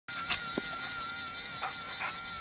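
A dog biting at soap bubbles: a few brief snaps, spaced out, over a faint steady high whine.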